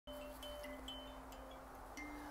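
Wind chime ringing faintly: several overlapping tones that start and fade at different moments, the lowest one held throughout.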